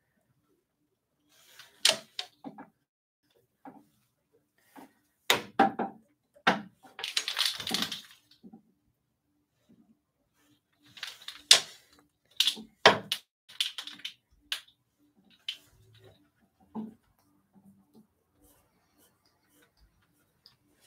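Irregular wooden clacks and knocks of takadai braiding: tama bobbins being picked up and set down, knocking against each other and the rails, with the braiding sword handled between passes. About seven seconds in there is a longer rustling clatter.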